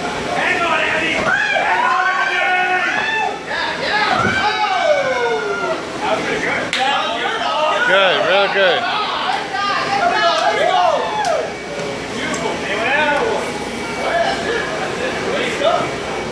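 Several people cheering and yelling, their voices swooping up and down, as they urge on a rider on a mechanical bull.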